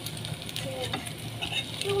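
French toast sizzling as it fries in shallow oil in a pan, with a spatula stirring and turning the pieces.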